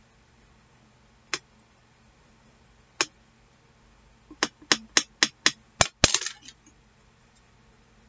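Hard craft tools clicking and tapping on a glass work mat as a bone folder is worked and set down and scissors are picked up: two single taps, then a quick run of about seven sharp clicks a little past the middle, ending in a brief clatter.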